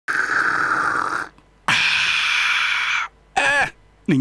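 A man slurping green tea from a small tea glass: two long, loud slurps with a short break between them, followed by a brief vocal sound near the end.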